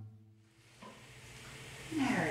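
The last plucked note of a guitar music bed dies away, followed by a faint, steady hiss that grows louder toward the end, with a small click about a second in.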